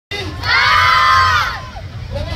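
A group of children shouting and cheering together, a loud burst of many high voices that swells about half a second in and eases off near the end.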